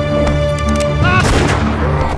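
Dramatic film score of sustained tones, with a sharp, loud impact about a second in followed by a short noisy burst, a sound-effect hit in a fight scene.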